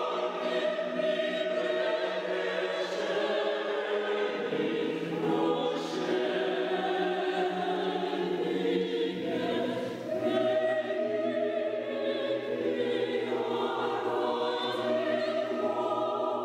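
Mixed choir of men's and women's voices singing unaccompanied, moving through long held chords that shift every few seconds.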